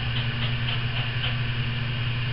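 A steady low hum with a constant hiss behind it: unchanging background noise in the room.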